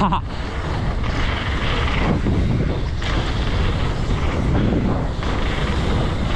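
Wind rushing over an action camera's microphone while a freeride mountain bike rolls fast down a wet dirt trail, its tyres and frame rattling in a steady, noisy rumble.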